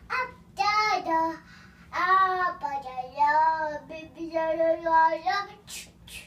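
A young child singing a tune on sustained vowels, in several held, gliding phrases.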